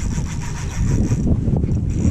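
Spinning reel's drag buzzing as a hooked tautog pulls line off against it, in a spell of about a second and then again briefly near the end, over a steady low rumble.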